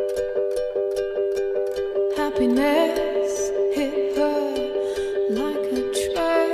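Background music: a steadily repeating plucked-string accompaniment, with a gliding melody line coming in about two seconds in.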